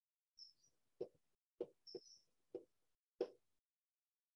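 Chalk knocking and scraping on a blackboard as letters and an arrow are written: about five short, faint knocks with a few brief high scratches between them.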